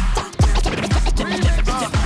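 A vinyl record scratched by hand on a Technics turntable over a hip-hop beat. The scratched sound slides up and down in pitch in short strokes, over deep bass drum hits about twice a second.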